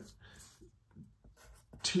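Graphite pencil writing on paper, a few faint short scratchy strokes.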